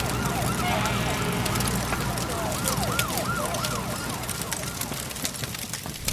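A siren warbling quickly, its pitch rising and falling about three to four times a second, over a low steady drone, fading out near the end.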